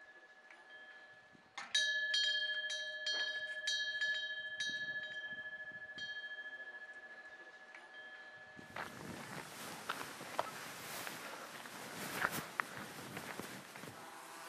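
A Korean temple wind bell (pungyeong), a small metal bell hung from the eaves with a fish-shaped clapper, is struck lightly by the wind about ten times in a few seconds. It rings with a clear, high, steady tone that slowly fades. In the last few seconds a steady rustling noise takes over.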